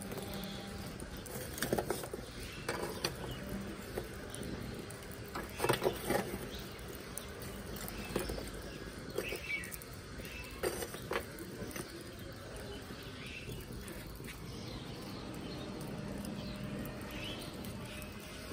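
Charcoal fire burning with open flames in a metal barbecue grill: irregular crackles and pops over a steady hiss.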